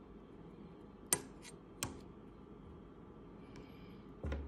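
A metal spoon clinks twice against an open tin can of beans and wieners, two sharp clinks under a second apart, about a second in; otherwise a faint room hush.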